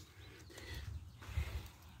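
Faint low rumble with a few soft bumps: handling noise as the camera is moved.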